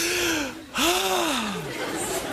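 Two loud, breathy vocal sounds, each a voice gliding up and then down in pitch, the second one longer.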